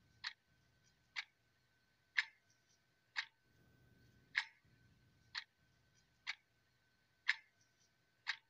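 Ticking, one sharp tick about every second, like a clock, over a faint steady high tone and a low hum.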